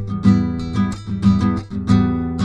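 Acoustic guitar strummed in a steady rhythm, about four strokes a second, as backing music.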